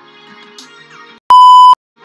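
Quiet background music cuts off about a second in, then a single loud, steady electronic beep tone of about half a second, like a censor bleep, stopping as suddenly as it starts.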